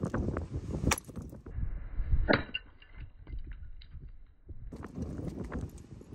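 Large hammer striking a rock nodule to split it open: a sharp crack about a second in and another a little after two seconds, followed by small clinks of stone. Wind rumbles on the microphone.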